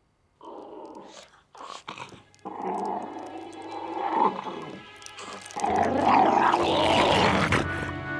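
Cartoon ant voices, short animal-like calls and growls, over film-score music that grows much louder about six seconds in.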